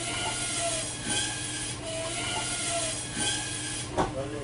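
A butcher's meat saw cutting through meat, a steady even grinding noise over a low hum.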